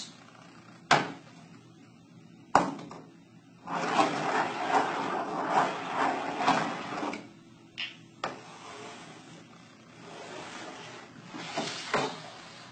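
Two steel balls racing along side-by-side demonstration tracks, one of them with two humps. Two sharp clicks, then a few seconds of uneven rolling rumble, then two knocks about half a second apart as the balls reach the far end at slightly different times.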